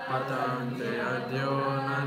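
A woman chanting a Sanskrit verse in a slow, melodic recitation, holding each note for a long time.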